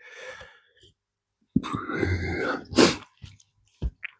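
A man burps once, a low throaty sound lasting about a second, then breathes out sharply; the superhot Dragon's Breath chilli is repeating on him.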